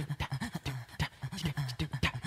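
Male singer's isolated a cappella vocal track: rhythmic panting breaths and short voiced vocal-percussion sounds in a quick, steady beat.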